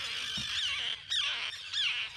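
A tern colony: many terns calling at once in a dense, overlapping chorus of high, short, curving calls.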